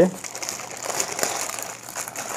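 Clear plastic bag crinkling in the hands as a V8 sound card wrapped in it is lifted out of its box's foam insert.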